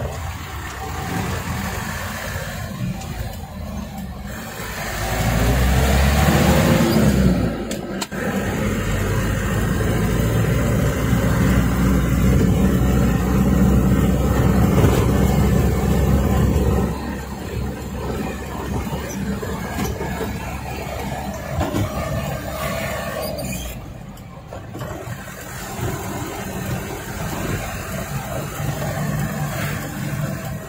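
Truck engine heard from inside the cab while driving with a load of fill soil. The engine pulls louder from about five seconds in, rising in pitch around seven seconds, and runs hard until about seventeen seconds in, then settles to a quieter steady run.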